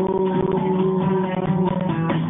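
Live romantic brega song played on acoustic guitar, with notes held steadily through the passage.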